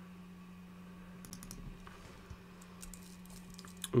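Faint, scattered clicks of a computer keyboard, a few light key presses mostly in the second half, over a steady low hum.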